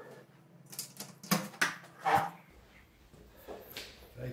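A few short, sharp clicks and knocks in quick succession, from a snooker player handling the cue ball and cue while settling into a shot.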